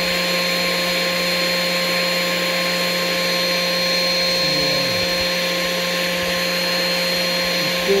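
A machine running steadily: an even whirring noise with a constant low hum and a few fixed higher whining tones, unchanged in level and pitch.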